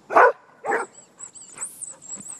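Bearded collie barking twice, two short, loud barks in the first second.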